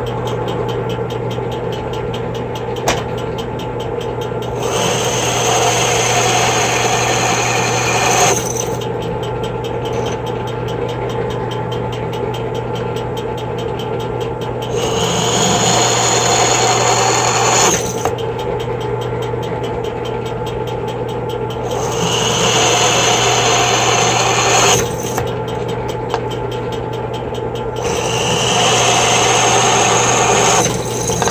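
Drill press motor running steadily while a 3/16-inch bit drills out holes in an aluminium hub-motor end cover to enlarge them for cooling. There are four cuts, each three to four seconds of louder, higher-pitched cutting noise over the running motor.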